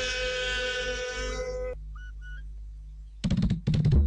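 Music: a long held note, rich in overtones, that stops short before the two-second mark, a couple of faint short tones, then a quick run of drum hits that gets loud near the end.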